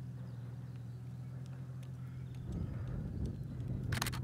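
A steady low hum that grows a little louder about two and a half seconds in, with a few faint ticks and one sharp click near the end.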